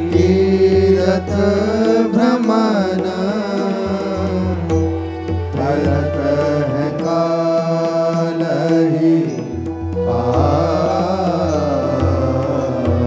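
Devotional verses sung in a chant-like melody: a voice holding long, wavering notes over steady sustained accompaniment tones and a regular low drum beat.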